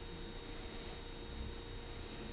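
Quiet room tone in a pause of speech: a faint steady low hum and hiss through the sound system, with no distinct sound.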